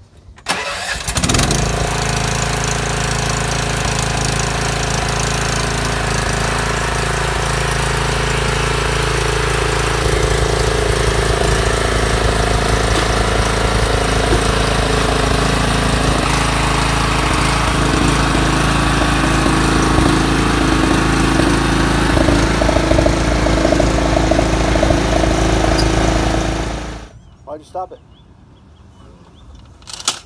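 Cub Cadet zero-turn mower's engine starts about half a second in and runs steadily, then cuts off suddenly near the end. It was started on choke and put to full throttle, and it makes a funny noise that sounded like it was going to die. This is part of an ongoing fault with this mower.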